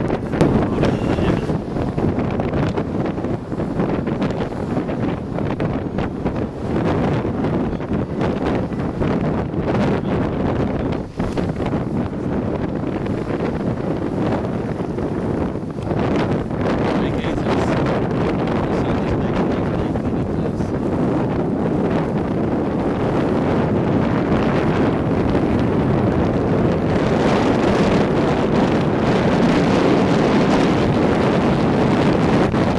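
Wind rushing over the microphone aboard a sailing yacht under way: a steady, gusty noise without any pitched tone, rising slightly near the end.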